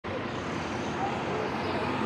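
Steady city street traffic noise: idling vehicle engines and passing road noise at an intersection. No siren sounds.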